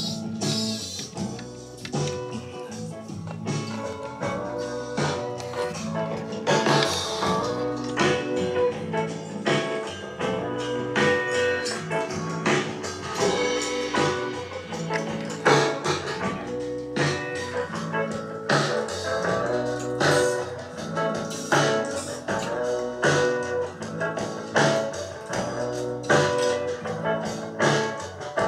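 Guitar music with a steady beat played through a salvaged 6.5-inch in-ceiling speaker wired to a home-theatre receiver and held in the hand, picked up across the room. The speaker is working.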